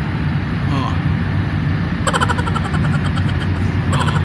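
An engine idling steadily, a continuous low drone, with a brief exclamation over it about a second in.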